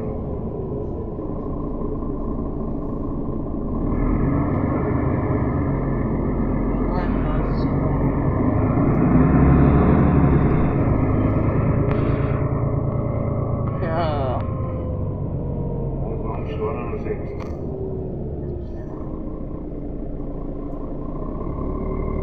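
Inside a moving city bus: steady engine and road rumble that swells in the middle, with a faint whine that slowly falls in pitch through the second half.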